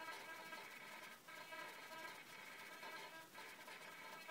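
Faint, steady whine of a Turnigy RC servo's motor and gears as it slowly sweeps its arm in a smoothness test.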